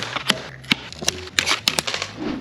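Diagonal cutters snipping plastic zip ties off cardboard packaging: a series of sharp snips, several within two seconds, with some handling of the cardboard.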